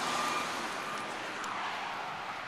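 Road traffic noise: a steady rush of passing tyres and engines that slowly fades.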